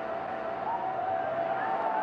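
Brass music beginning: one held, slightly wavering note over a steady hiss of noise.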